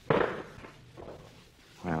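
A single gunshot sound effect from a 1950 radio drama: one sudden loud bang just after the start that dies away within half a second.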